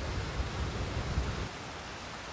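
Steady outdoor background noise: an even hiss with a low rumble underneath, easing slightly in the second second.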